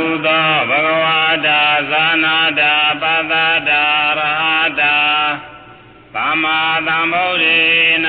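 A man chanting a Buddhist recitation in a slow, melodic intonation, with long held notes. There is a short break about five and a half seconds in before the chant resumes.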